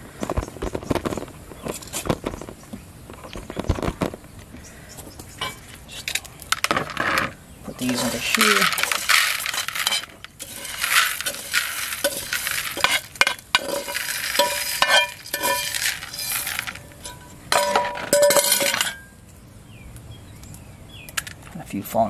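Freshly roasted coffee beans poured from a metal pan into a plastic bowl, rattling in several pours, with clinks and knocks of the metal pan throughout.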